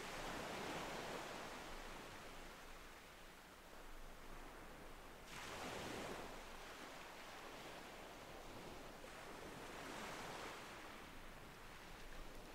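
Faint ocean surf: waves wash in and recede, one swell about every five seconds.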